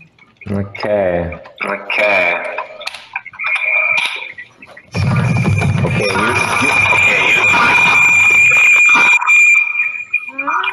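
Video-call audio caught in an echo loop: garbled, overlapping voices over a steady high-pitched ringing tone, swelling into a loud dense wash about five seconds in.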